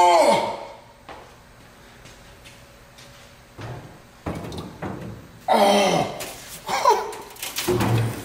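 Thunks and knocks of a heavy ZF manual transmission case being set down and shifted about in a parts washer tub, with a few strained grunts of effort from the man lifting it.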